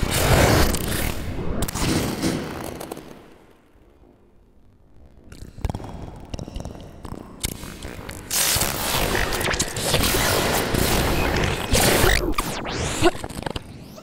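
Harsh, distorted noise from an experimental live electronic set: close-miked vocal sounds run through electronics and triggered from a pad controller. Loud for about three seconds, a dip, then building again from about five seconds in, with falling swoops near the end.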